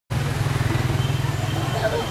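Small motorbike engines running as the bikes pass close by, a low, rapidly pulsing engine note, with voices faintly behind.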